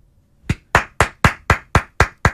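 A man clapping his hands close to a studio microphone: a steady run of sharp claps, about four a second, starting about half a second in.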